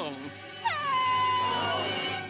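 A high cartoon voice giving a long wailing cry. It starts with a quick downward swoop about two-thirds of a second in, then holds one pitch and fades away.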